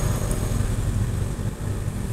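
Steady low rumbling hum with no sudden sounds, like a running motor or burner.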